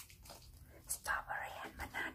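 A woman whispering close to the microphone, starting about a second in, after a few faint clicks.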